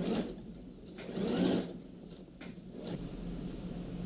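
Domestic electric sewing machine stitching through coat fabric in short runs, the longest and loudest about a second in, with a few quicker stitches near the end.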